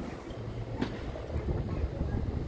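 Sharp cracks of a tennis ball off the racket strings, one right at the start and another just under a second later, over a steady low rumble of wind on a phone microphone.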